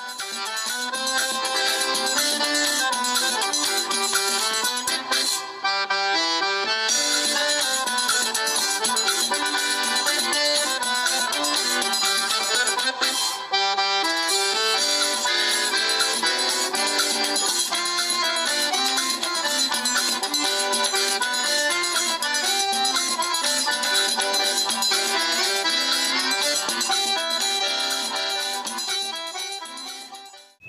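Instrumental background music playing steadily, fading out near the end.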